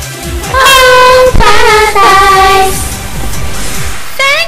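Upbeat J-pop song: a young female voice sings long held notes over a backing track with a steady kick-drum beat. The voice comes in about half a second in and slides down in pitch partway through.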